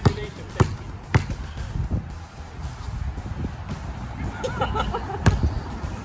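A basketball bouncing on a concrete slab: sharp bounces about half a second apart in the first second, then a pause, then another bounce near the end.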